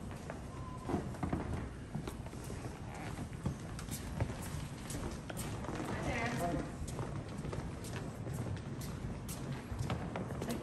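Footsteps of hard-soled shoes walking across a tiled floor, a steady series of sharp clicks about two a second, with faint indistinct voices in the background.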